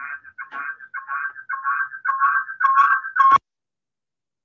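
A man's voice over a video call breaking up on a bad connection: his speech turns into a run of short, warbling two-note tones that grow louder, then cuts off abruptly about three and a half seconds in.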